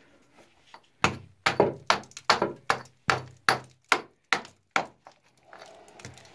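Steel rock pick striking a rock face of sulfide ore in quick, even blows, about fifteen at some four a second, starting about a second in. A piece of ore is being chipped loose as a sample.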